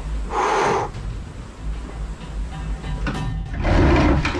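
Two loud scraping noises from a heavy wooden dresser shifting, one short about half a second in and a longer one near the end, over low droning background music.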